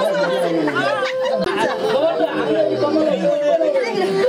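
Several people talking at once: a crowd's chatter.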